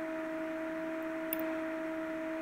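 A steady hum, one tone with its overtone, over low background noise, with a faint click just after halfway.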